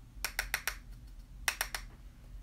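Sharp taps of a makeup brush against a setting-powder jar as it is loaded: two quick runs of about four taps each, about a second apart.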